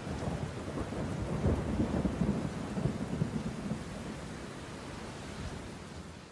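Low rumbling noise with an even rain-like hiss, left over after a pop song's music has stopped, slowly fading away.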